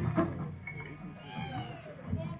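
Lull between songs at a live metal concert: scattered voices and stage noise, with a high wavering cry around the middle.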